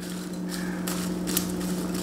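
Popcorn being stirred with a silicone spatula in a glass bowl: dry rustling of the kernels with a few sharp ticks of the spatula against the glass, over a steady low hum.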